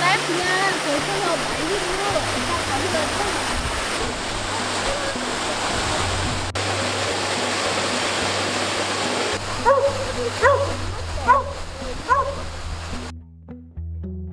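Steady rush of a waterfall pouring into a creek pool, with a border collie whining in high, wavering cries at the start, then a few louder, shorter cries about ten seconds in.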